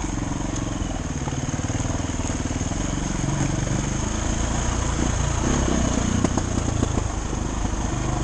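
Dirt bike engine running steadily at low revs on a steep singletrack descent, with a few short knocks from the bike over rocks and roots about five to seven seconds in.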